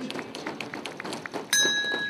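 Running footsteps of a pack of middle-distance runners slapping on the synthetic track as they pass. About one and a half seconds in, the last-lap bell is struck once and rings on with a steady high tone, signalling one lap to go at the 600 m mark of a 1000 m race.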